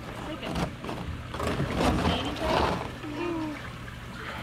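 Water running in a gem-mining sluice, with splashing and short clicks as a sifting screen of dirt and stones is shaken in it.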